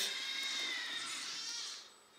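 Small electric motor of an RC forklift whining steadily and high-pitched for most of two seconds, fading out near the end.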